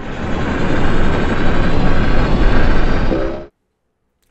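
Loud, deep cinematic rumble sound effect, like a fiery explosion roar, swelling in over the first half-second and cutting off suddenly about three and a half seconds in.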